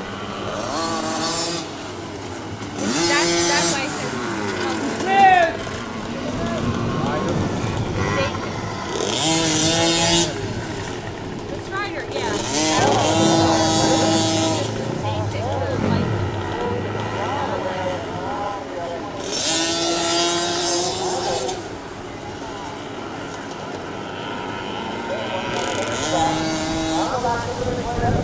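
Several small youth dirt bike engines running in laps, their pitch rising and falling as they rev through the turns. There are several louder pass-bys a few seconds apart as bikes go by close.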